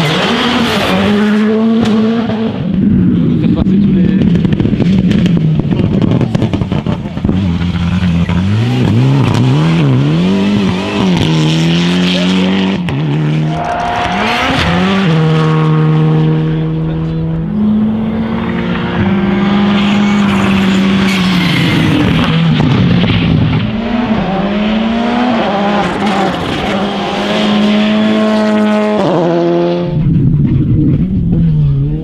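Škoda Fabia R5 rally cars passing one after another on a special stage, their 1.6-litre turbocharged four-cylinder engines revving hard. The engine pitch climbs and drops again and again with quick gear changes, with a few stretches held at steady revs.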